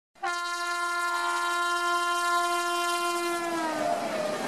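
Train horn sounding one long, steady blast of about three seconds, its pitch sagging as it fades, giving way near the end to the rumble of the moving train.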